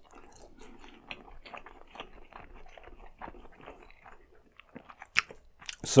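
Close-miked chewing of a bite of glazed eel nigiri: soft, wet mouth sounds in a quick, irregular patter, with one sharper click about five seconds in.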